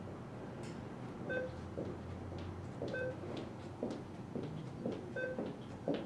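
ATM keypad beeping: three short two-tone beeps, about a second and a half to two seconds apart, over the steady hum of the room with scattered light clicks.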